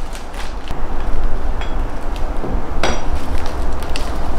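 Accessory packaging being handled and opened: cardboard and plastic wrapping rustling, with scattered taps and knocks and one louder, sharper sound about three seconds in.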